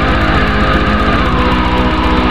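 Black metal recording: distorted electric guitars playing sustained chords over a rapid, even drumbeat.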